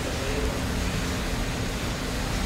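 Steady room tone of a large indoor hall: an even hiss with a low hum, typical of building ventilation, and no distinct events.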